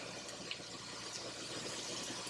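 Faint, steady sizzle of arborio rice and shallots toasting in butter and olive oil in a pot.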